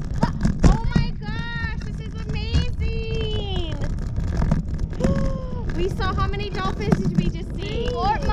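Excited voices calling out in long, drawn-out, wordless exclamations, over a steady rumble of wind on the microphone.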